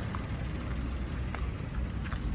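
Steady low rumble of background noise, with two faint ticks.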